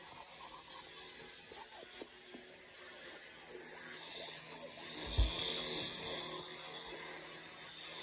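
Electric toothbrush buzzing faintly while brushing teeth, with a single low thump about five seconds in.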